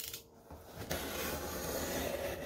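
Cardboard shipping box being pulled open by hand: a short click, then from about a second in a steady rasping scrape of cardboard and packing tape.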